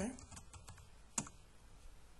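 Typing on a computer keyboard: a few light key clicks, then one sharper keystroke a little over a second in.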